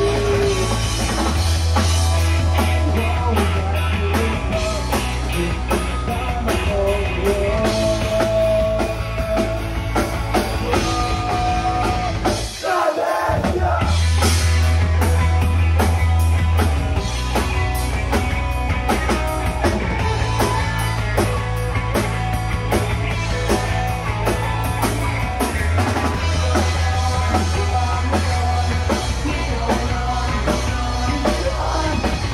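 Live rock band playing loud: drum kit, electric guitar and bass, with a singer's voice over them. The bass and drums drop out for a moment about halfway through, then the band comes straight back in.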